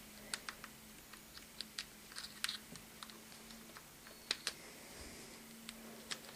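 Faint, irregular small plastic clicks and taps as a dock-connector cable plug is worked into an iPod Touch through the flap of a rubbery Marwere Sports Grip case; the case makes the plug hard to fit.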